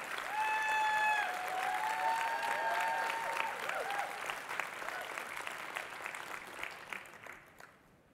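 Audience applauding, with a few voices cheering in the first few seconds; the applause dies away near the end.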